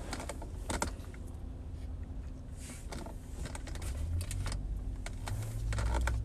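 Food packaging being handled in a car: scattered light clicks and soft rustles of a paper bag and a paper cup, over a low steady cabin hum.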